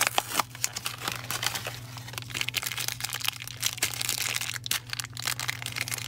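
A foil blind bag crinkling and tearing as it is pulled open by hand, a dense run of irregular crackles.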